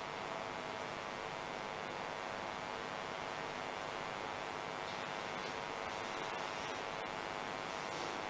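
Steady faint hiss with a low hum underneath: the background noise of a live broadcast audio feed with no commentary.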